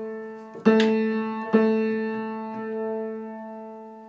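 Piano strings at A3 pitch, struck twice in a tuning check, about two-thirds of a second in and again at about a second and a half, each time ringing on and dying away. The held tone swells slowly once near the end, the kind of slow beating a tuner listens to while raising A3 to clean up the A3–A4 octave.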